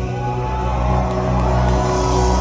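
Live band music heard from the audience: held chords, with a line rising in pitch about half a second in.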